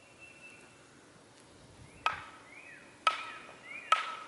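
Three hammer blows on a wooden fence post, about a second apart, each sharp with a short metallic ring.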